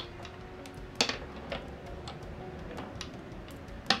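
Marbles dropped onto a tilted wooden floor, clicking and rolling down toward the middle; the loudest click comes about a second in, with scattered lighter ones after.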